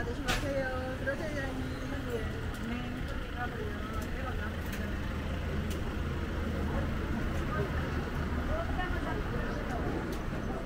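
Street ambience: passers-by talking in snatches, mostly in the first few seconds and again near the end, over a steady low rumble of vehicle engines and traffic. There is a single sharp click just after the start.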